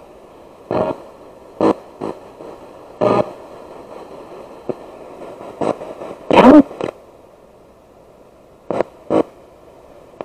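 Radio spirit box sweeping stations: a hiss of static broken by about ten short, chopped bursts of radio sound. The loudest burst, about two-thirds of the way through, carries a clipped voice-like fragment.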